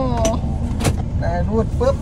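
A man talking in Thai inside a parked car, over the low steady hum of its running engine and air conditioning. There is one sharp click a little under a second in.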